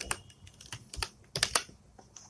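Computer keyboard being typed on: a quick, irregular run of key clicks, several a second.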